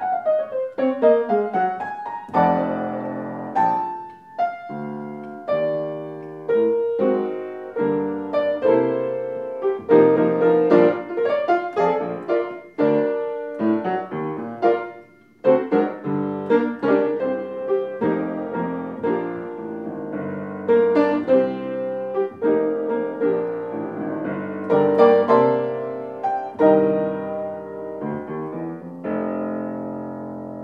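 An upright piano played solo as a jazz ballad improvisation. It opens with a quick descending run, and there is a brief pause about halfway through.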